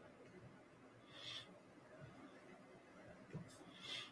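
Near silence: room tone, with two faint short breaths, one about a second in and one near the end.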